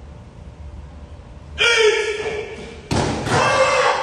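A karateka's loud kiai shout about one and a half seconds in, then a sharp thud of a bare foot or body hitting the foam mat, with a second loud shout overlapping it near the end.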